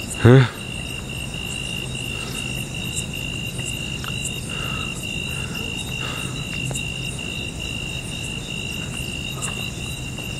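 Crickets chirping in a steady chorus: one high note pulsing evenly, over and over.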